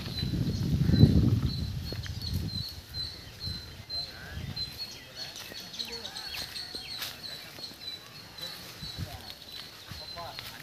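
Rural outdoor ambience: a short high chirp repeats over and over with faint voices in the background, and a low rumble on the microphone fills the first two or three seconds.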